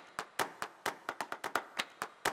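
Rhythmic hand claps, sharp and dry, in a quick steady beat of about four to five a second.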